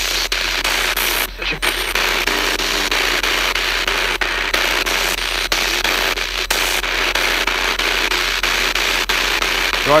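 Spirit box sweeping through radio stations: a steady hiss of static chopped by quick clicks and dropouts as it jumps from station to station, with brief snatches of radio voices.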